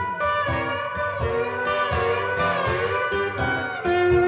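Acoustic blues played on a twelve-string and a six-string acoustic guitar in an instrumental break between sung lines, with sustained notes that slide in pitch over a steady plucked rhythm.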